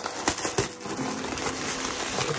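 Paper wrapping and packing stuffing crinkling and rustling as a wrapped item is handled and lifted out of a cardboard shipping box, with a few sharp crackles in the first second.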